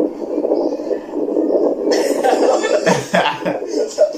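A man laughing hard in breathy, cough-like bursts, growing louder about halfway through.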